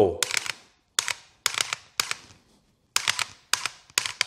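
Dry-fire trigger clicks from an AR pistol fitted with the Mantis Blackbeard auto-resetting trigger system, in quick groups of two or three with short gaps between, as the trigger is pressed shot after shot on several targets.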